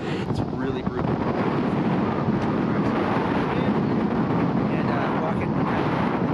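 Strong desert wind, blowing a sustained 30 to 40 miles an hour, buffeting the microphone: a loud, steady rush of wind noise.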